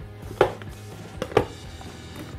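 Snap-latch lid of a glass food-storage container being unclipped: two sharp plastic clicks about a second apart as the latches are flipped open.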